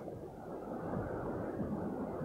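Steady low outdoor background noise, a rumble like distant street traffic, rising slightly about half a second in.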